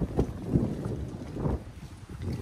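Wind rumbling on the microphone, with a few soft thumps while the camera is carried.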